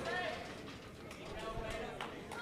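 Indistinct voices and chatter in a large hall, with no words clear enough to make out.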